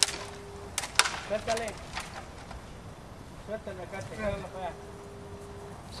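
Faint, distant voices with a few sharp knocks near the start and about a second in, and a steady single tone held for about a second, twice.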